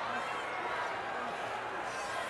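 Steady crowd noise from a large arena audience, with a brief faint voice just after the start.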